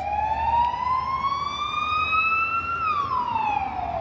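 Emergency vehicle siren sounding a slow wail: one long rise in pitch over nearly three seconds, then a quicker fall.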